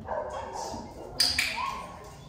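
A dog yipping and whining: a sudden sharp yip a little over a second in, the loudest sound, then a thin high whine held near the end.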